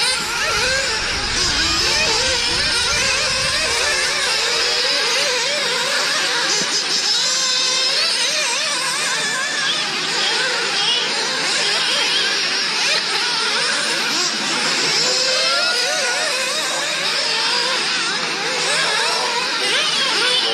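Several nitro RC off-road cars racing together, their small two-stroke glow engines whining and revving up and down as they accelerate and brake around the track, many engines overlapping. A low rumble underlies the first few seconds.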